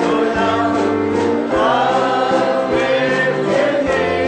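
Group of voices singing a gospel worship song together over instrumental accompaniment, holding long notes.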